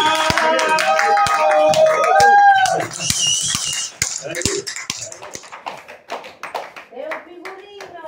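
A small audience clapping and calling out at the end of a song. Voices are loudest over the first three seconds, then the applause thins out and dies away.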